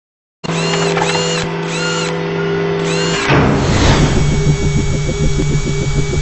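Produced logo-animation sound effects. A steady machine-like hum with a high figure repeating about twice a second gives way, about three seconds in, to a sweep and then a fast pulsing beat.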